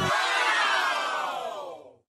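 Scene-transition sound effect: a shimmering, noisy whoosh that slowly falls in pitch and fades away near the end.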